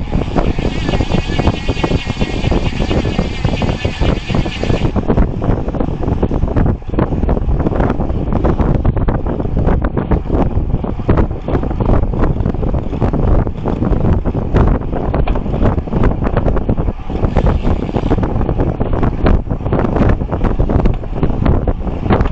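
Wind buffeting the microphone of a bicycle-mounted camera riding at about 30–35 km/h, a loud, steady low rush. A higher, fluttering hiss rides over it and stops about five seconds in.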